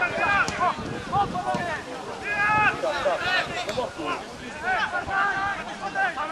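Several voices shouting and calling out during a football match, in short overlapping shouts, with one longer held call a little after two seconds in.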